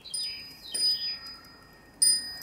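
Metal-tube wind chime ringing: two strikes about two-thirds of a second apart, with high ringing tones that fade away.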